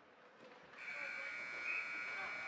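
Ice rink's scoreboard horn sounding one steady, high-pitched tone that starts about a second in and holds, signalling the end of the period as the clock runs out.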